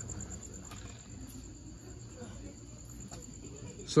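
Crickets chirping, a high, evenly pulsing trill, over a faint murmur of distant voices.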